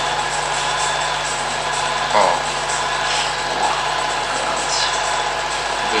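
Film projector running steadily, its film-advance mechanism giving a fast, even mechanical rattle over a low hum.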